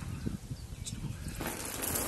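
Water poured from a bucket splashing over a man's head, starting suddenly about one and a half seconds in as an even splashing hiss. Before that only a faint low rumble.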